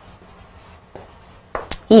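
Chalk writing on a blackboard: a run of short scratching strokes.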